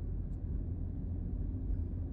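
Steady low rumble of a car, engine and road noise as heard from inside it while it rolls slowly.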